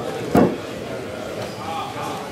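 A single loud, short thump about a third of a second in, over the chatter of an audience.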